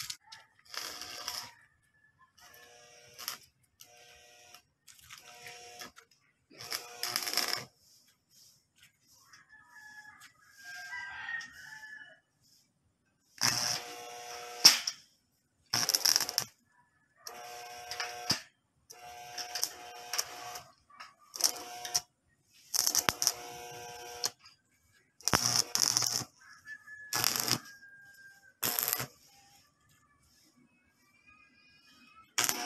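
Stick (arc) welding crackling and hissing in short bursts of about a second, with silent gaps between, as a steel wire-mesh wall panel is welded to its steel frame.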